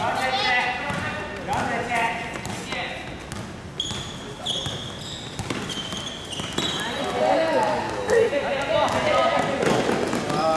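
Basketball being dribbled on a hardwood gym court during play, with short, high sneaker squeaks in the middle and indistinct shouting voices.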